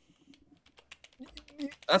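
Light, irregular clicks of typing on a computer keyboard.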